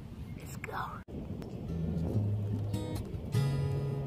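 Open-air background noise with a brief voice, broken by an edit cut about a second in. Then the intro of a pop song starts, with steady low bass notes, and grows louder about three seconds in.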